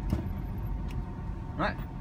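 Low steady rumble of cabin noise inside a Mitsubishi electric car, with a single sharp click just after the start. A voice says "all right" near the end.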